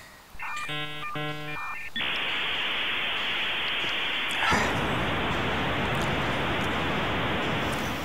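A short run of electronic beeping tones, then a loud steady hiss like radio static that gets fuller and deeper about halfway through: sound effects added in editing.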